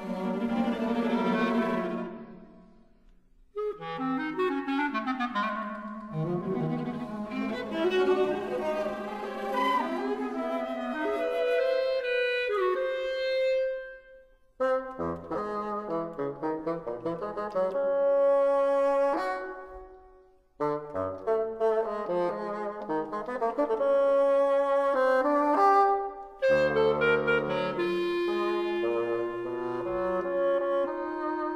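Mixed chamber ensemble of woodwinds and strings playing contemporary classical music: sustained notes and chords in phrases, broken by brief near-silent pauses about three seconds in, at about fourteen seconds and at about twenty seconds.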